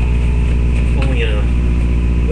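A steady, loud low hum with evenly spaced overtones, with a brief voice sound about a second in.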